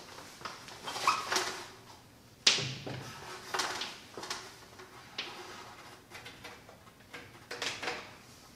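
Irregular knocks and clunks as a mosquito screen's roller box is handled and pressed up against the top of a frame, with steps on a stepladder; the loudest knock comes about two and a half seconds in.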